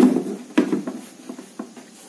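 Hard plastic cover of a bench spectrophotometer being pressed and settled onto its case by hand: a sharp knock at the start, another about half a second in, then a few lighter taps that die away.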